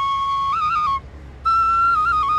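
Small bamboo transverse flute playing a simple melody in short phrases. A note slides up and is held, with a quick ornament; after a brief pause of about half a second a new phrase starts on a slightly higher note.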